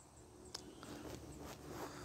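A quiet pause: faint outdoor background hiss, with a single soft click about half a second in.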